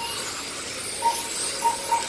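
Radio-controlled touring cars racing, their motors whining high and rising and falling in pitch as they drive round the track. A few short beeps sound during it.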